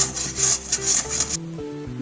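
Raw peeled potato being grated on a stainless steel hand grater: repeated rasping strokes, about three a second, that stop about a second and a half in.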